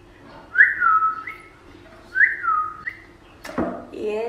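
A person whistling two matching phrases, each a note that glides down and holds, then a short higher note, followed near the end by a sudden burst of laughter.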